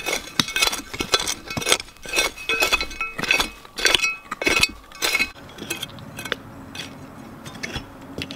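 A serrated metal hand digging trowel raking and chopping through hard-packed, debris-filled dirt, with a quick run of scrapes and clinks as the blade strikes hard bits in the soil. The strokes come thick for about five seconds, then thin out and grow fainter.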